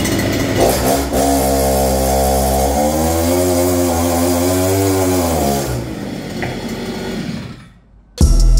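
Two-stroke brushcutter engine mounted on a bicycle, running and spinning the rear tyre through a friction roller on its output shaft. It revs up about three seconds in, holds, drops back a couple of seconds later, then runs lower and dies away near the end.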